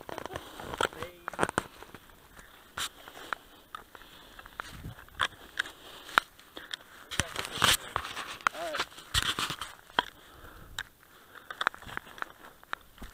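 Scattered clicks and knocks of a shotgun being handled close to the microphone, with a faint voice heard briefly about three-quarters of the way through.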